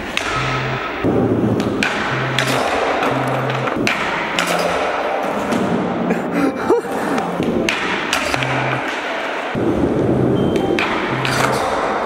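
Skateboard and body thuds on a concrete floor, a hard slam about halfway through, over background music with a bass line.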